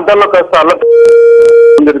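A man talking over a telephone line is cut across by a loud, steady electronic beep of one pitch lasting about a second, after which his voice comes back.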